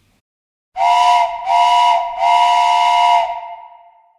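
A steam whistle blows three blasts with a rush of steam: two short ones, then a longer one. Two notes sound together in each blast and fade out after the last.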